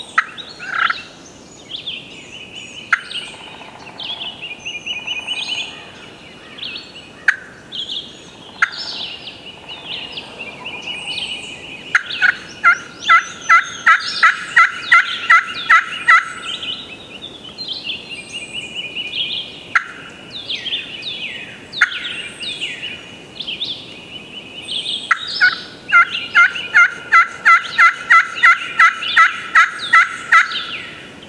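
Wild turkey yelping: two long runs of evenly spaced yelps, about three or four a second, one near the middle and one near the end. Songbirds chirp throughout.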